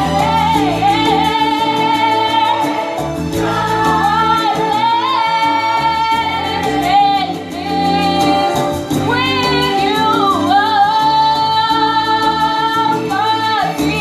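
Girls singing a song through a microphone over instrumental accompaniment, with long held notes in the melody.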